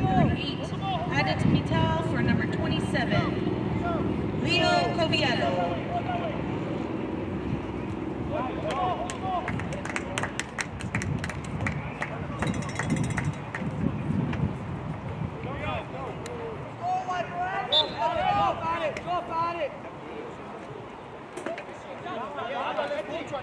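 Indistinct shouts and chatter from soccer players and onlookers at an outdoor match, with a run of sharp clicks about ten seconds in.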